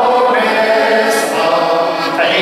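A man singing a Moravian folk song while accompanying himself on a button accordion, with held, sustained chords under the voice.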